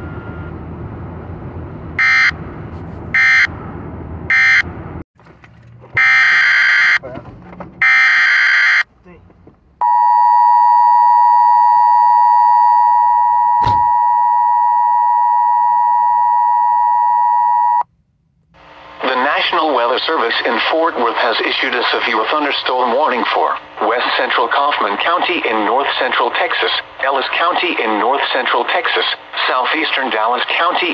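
Emergency Alert System broadcast: short bursts of warbling SAME digital data, then the steady two-tone EAS attention signal for about eight seconds, with a click partway through. A synthesized voice then begins reading a severe thunderstorm warning.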